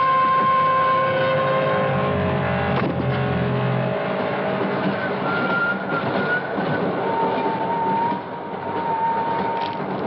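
Dense, steady rumbling noise of a moving train, under held musical notes that fade out in the first few seconds; later two long high tones sound over the rumble.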